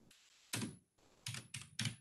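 Typing on a computer keyboard: four short keystroke clicks, one about half a second in and three in quick succession in the second half.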